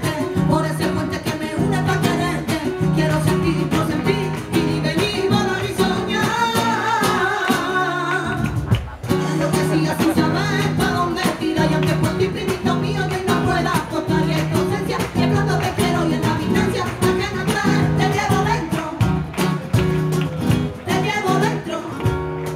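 A live band playing a song: a woman singing over guitar and a steady repeating accompaniment, with a short break about nine seconds in.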